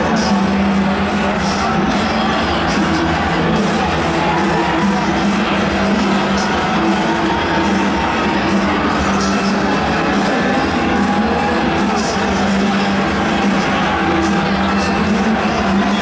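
Music played over a ballpark's loudspeakers, steady throughout, with crowd noise and some cheering beneath it.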